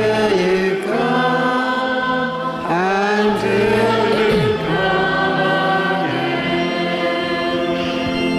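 Congregation singing the sung memorial acclamation of the Mass, a slow chant-like melody of held notes, with organ accompaniment.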